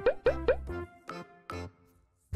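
Playful background music with a bouncy bass line, overlaid with three quick rising 'bloop' cartoon sound effects near the start.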